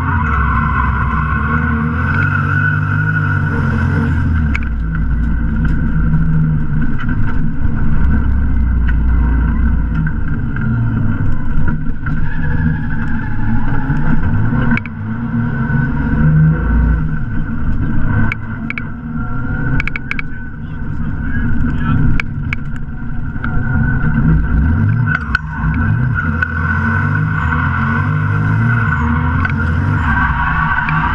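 Lexus GS300 drift car's 3.0-litre straight-six engine revving up and down repeatedly under hard driving, heard from inside the stripped-out cabin.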